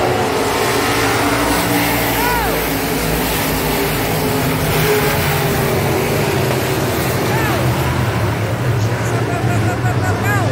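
A field of dirt-track B-mod (sport mod) race cars running their V8 engines hard around the oval, a dense steady engine din. A few engine notes sweep up and down in pitch as cars go by.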